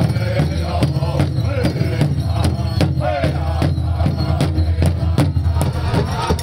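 Powwow big drum struck in unison by several drummers with padded beaters, a steady beat of about two to three strikes a second, with voices singing over it.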